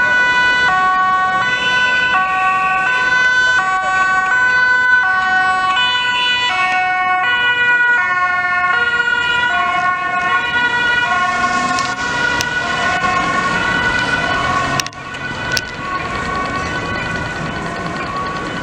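Dutch ambulance's two-tone siren, alternating between a high and a low tone about every two-thirds of a second as the ambulance drives past close by. In the second half the tones blur and drop slightly in pitch as it moves away.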